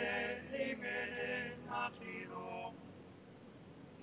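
A man's voice making long, drawn-out wordless vocal sounds that fade to quiet near the end.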